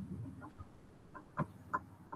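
Faint short clucking calls from a bird, a few a second and irregularly spaced, two of them louder just before and after the middle, with a brief low rumble at the start.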